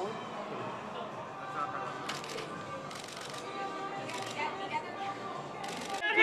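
Press photographers' camera shutters firing in rapid bursts, about four clusters of quick clicks a second or so apart, over a steady murmur of voices.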